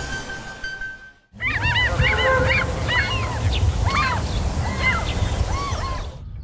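A short music sting fades out about a second in. After a brief gap, a flock of birds calls over and over with a low wind rumble underneath.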